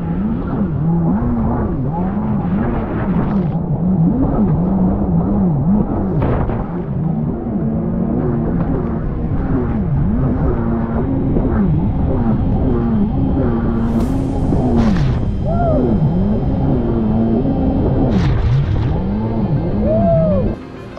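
Kawasaki 750 SXi Pro stand-up jet ski's two-stroke twin engine running hard, its pitch rising and falling again and again as the throttle is worked through turns, over the rush and spray of the hull on choppy water. It is running the stock impeller, which the rider finds short on bite.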